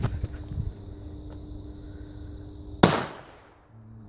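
An A-Böller firecracker from a 1998 batch going off with a single sharp, powerful bang about three seconds in, its report dying away over about half a second.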